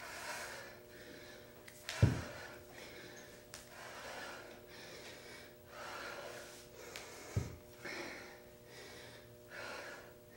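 A woman breathing hard and audibly while doing push-ups, a breath every second or two. Two thumps stand out, about two seconds in and again after seven seconds.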